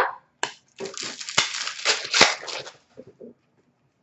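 Hands handling and sorting trading cards: a couple of seconds of rustling, slapping card stock with sharp clicks, the sharpest a little after two seconds in, then a few faint taps.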